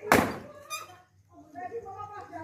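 An axe biting into a dry log with one loud, heavy strike right at the start.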